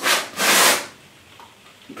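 A metal painting knife scraping acrylic paint across a stretched canvas: a short stroke, then a longer one of about half a second, both in the first second.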